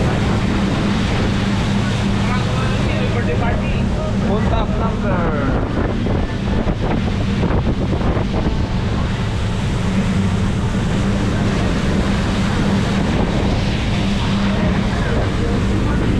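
Motorboat engine running steadily at cruising speed, a constant low hum, with water rushing along the hull and wind buffeting the microphone.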